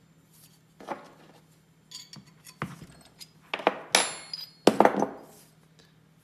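Steel parts clinking and tapping as a freshly turned taper is handled and a bent-tail lathe dog is taken off its end and set down. It is a handful of separate sharp clinks, the loudest two about four and five seconds in, each with a brief metallic ring.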